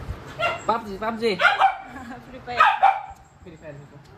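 A small fluffy puppy giving a few short, high-pitched yips.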